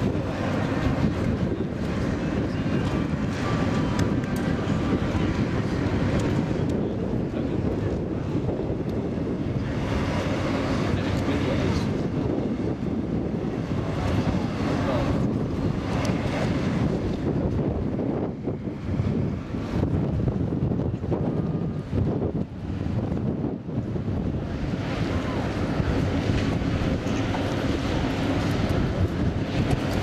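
Wind buffeting the camera's microphone, a steady low rumble that eases off briefly about two-thirds of the way through.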